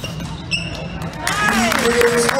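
Basketball game sounds on a hardwood gym floor: sneakers squeaking in short high squeals and glides, and a ball bouncing. It gets busier and louder just over a second in.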